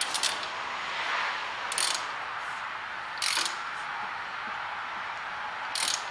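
Ratchet wrench clicking in a few short bursts as the 13 mm caliper bolts on a brake caliper are tightened.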